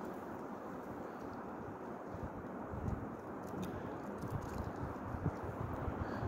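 Quiet outdoor ambience: a steady low rush of wind on the microphone, with a few faint soft clicks in the second half.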